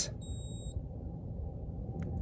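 One short, high-pitched electronic beep, about half a second long, from the Outin Nano portable espresso machine as its power button is held down: the signal that it has started heating the water to brew.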